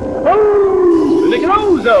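A long howl, held for about a second and sliding slowly down in pitch, then breaking into wavering swoops, with a voice saying "Zone" near the end.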